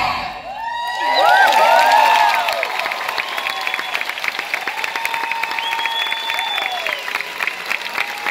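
Theatre audience cheering as the song's last chord ends: a loud burst of high screams and whoops about a second in, settling into steady applause with scattered whoops.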